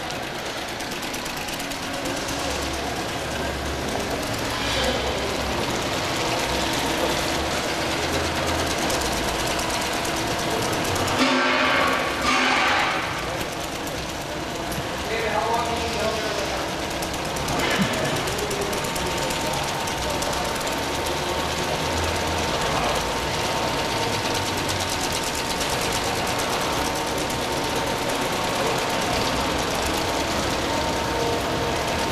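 A stainless steel curved 90° table-top conveyor running steadily, with its 1 hp electric drive motor and Intralox modular plastic belt making a continuous mechanical running noise. A brief louder noise comes about eleven seconds in.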